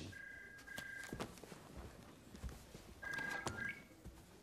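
Mobile phone ringing with an electronic two-tone ring: one ring at the start and another about three seconds later.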